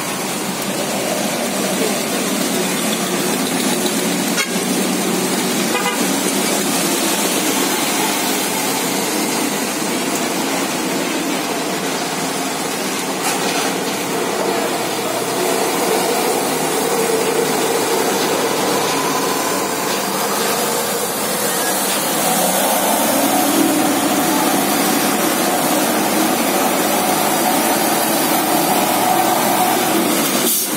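Road traffic on wet pavement: truck and car engines running, tyres hissing on the wet road, and horn toots. About two-thirds of the way in, a heavy diesel cargo truck's engine gets louder as it pulls up and around a steep hairpin under load, its rear wheels struggling for grip on the wet surface.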